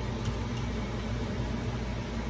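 Steady machine hum with a faint even hiss, unchanging throughout.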